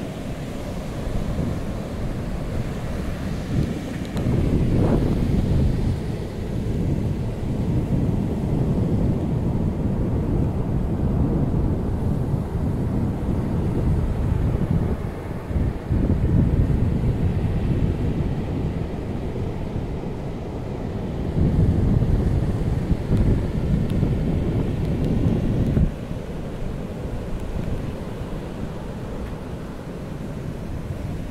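Pacific Ocean surf breaking and washing up a flat sand beach, overlaid by wind buffeting the microphone in gusts as a low rumble. The wind rumble drops away suddenly near the end.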